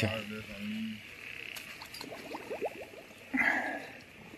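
Crickets trilling steadily in a night insect chorus, with frogs calling: a low held call in the first second and a quick run of short croaks past the middle.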